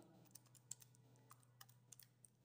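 Faint clicks of plastic keys being pressed on an Orpat OT-512GT desktop calculator, several separate taps spread through the two seconds over a steady low hum.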